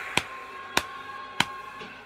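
Three sharp, short impact sounds, evenly spaced a little over half a second apart, over a low steady background.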